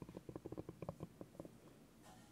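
Spiky rubber massage ball rolled and pressed on a bamboo board, its nubs making a quick run of soft taps that thin out and stop about a second and a half in.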